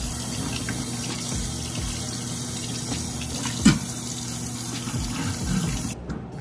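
Kitchen faucet running steadily, its stream falling onto a man's mouth as he drinks straight from it over a stainless-steel sink. One brief sharp sound a little past halfway.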